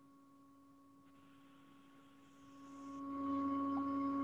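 A steady pitched tone with a few overtones. It is near silent for the first two seconds, then fades in over about a second and holds steady.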